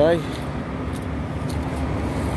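Diesel semi-truck engine running as a tractor-trailer rolls past, a steady low rumble.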